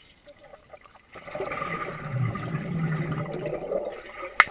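Pool water churning and bubbling, heard underwater through a GoPro's waterproof housing. It is quiet for about a second, then a louder stretch of bubbling, rushing noise sets in and dies away just before the end.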